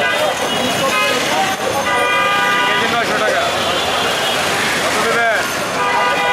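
Busy market street din: many voices talking over one another, with vehicle horns honking several times. One horn blast is held for about a second.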